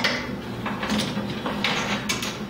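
Handling noise as a cable is routed along a metal T-slot rail: a few light clicks and rattles of the cable and hands against metal parts.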